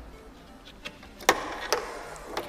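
Hard plastic clicks and knocks as the LED tail light housing is pulled free of its mount on a Honda NC750X, with one sharp click a little past halfway.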